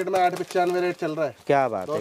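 A man speaking Hindi in a shop, with no other clear sound.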